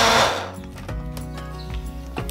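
Personal push-down blender whirring as it blends berries, a loud whir that stops about half a second in. Background music carries on after it.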